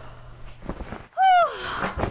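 Faint rustling of bags being handled, then, a little past halfway, a woman's short strained groan that falls in pitch, followed by a breathy exhale: the effort of lifting a heavy bag.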